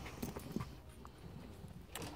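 Faint, irregular taps and light knocks over quiet room tone, a few of them sharper, one near the end.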